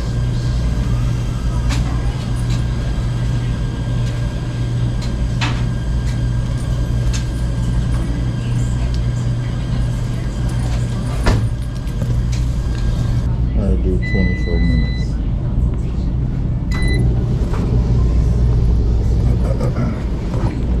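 Steady low hum of laundromat washers and dryers running, with a few sharp knocks and clatter as a dryer is loaded, the loudest about eleven seconds in. A machine's electronic beep sounds, one long beep a little past the middle and a short one a few seconds later.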